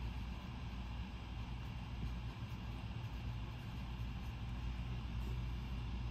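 Steady low background hum of room tone, with no distinct events.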